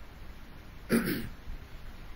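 A man clearing his throat once, briefly, about a second in.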